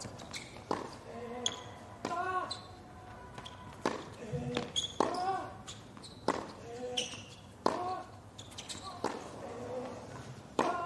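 A tennis rally on a hard court: racquets striking the ball and the ball bouncing, a sharp knock about every second. Most shots come with a short vocal grunt from the hitting player.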